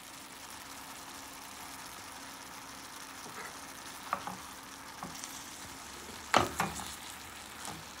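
Chopped squash frying in a stainless steel pot with a steady, quiet sizzle as chopped tomatoes go in. A few light clicks, then two sharper knocks about six seconds in, as a wooden spoon strikes the pot.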